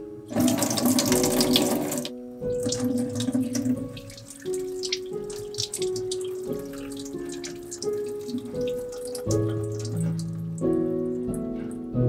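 Kitchen tap running into a stainless steel sink, with a loud gush from about half a second in to two seconds, then water splashing and spattering as a loaf of soap is turned and rinsed under the stream. Soft background music plays throughout.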